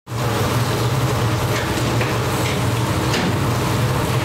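Steady kitchen noise: a low hum and an even hiss, with a few light clicks as wooden spatulas turn food in a nonstick roasting pan.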